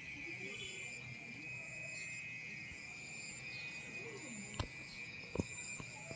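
Faint steady high-pitched trilling of insects in the background, with two sharp clicks near the end.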